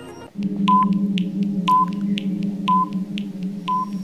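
Quiz countdown-timer sound effect: a steady low electronic hum with a short beep about once a second and light ticks in between, starting a moment in.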